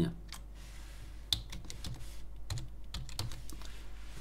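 Typing on a computer keyboard: a quick run of separate keystrokes, one struck louder about a second in.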